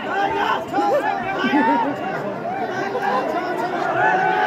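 Crowd of spectators chattering: many overlapping voices at once, with no single speaker standing out.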